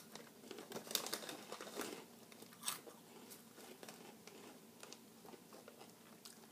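Small bag of Hot Cheetos crinkling in a few short bursts in the first three seconds as a hand reaches in for chips.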